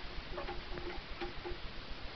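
Domestic pigeon cooing in a few short low notes in the first part, over a steady ticking several times a second.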